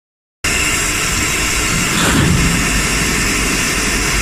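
Two-cavity linear PET bottle blowing machine running: a loud, steady mechanical and air noise with a low rumble, starting about half a second in.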